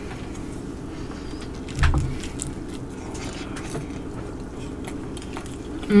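Close-miked chewing of a bite of seaweed-wrapped rice ball, with faint small wet clicks from the mouth, over a steady low hum; a short soft thump about two seconds in.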